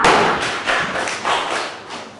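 A kick striking a hand-held leather kicking paddle: a loud, sharp smack right at the start, then a few fainter knocks that die away over the next second and a half.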